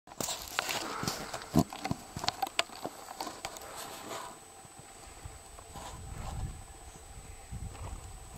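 Wind rumbling on the microphone, strongest in the second half. In the first three seconds there is a scatter of sharp clicks and knocks, the loudest about a second and a half in.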